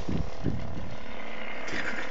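A boat's motor running steadily, with low wind rumble on the microphone and a couple of dull thumps in the first half-second.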